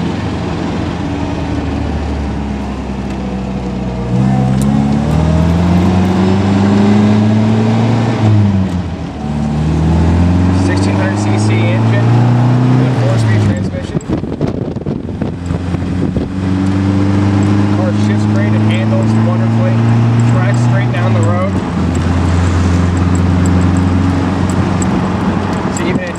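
1960 MGA 1600's four-cylinder engine accelerating the open roadster up through the gears of its four-speed manual. The revs climb, fall at a gear change about nine seconds in, and climb again. They fall once more around fourteen seconds, then run fairly steady, with one last drop a few seconds after twenty.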